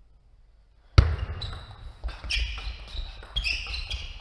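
Table tennis rally: sharp clicks of the celluloid ball off rubber bats and the table, starting after about a second of near silence with one loud knock. High, short shoe squeaks on the sports floor come in among the hits.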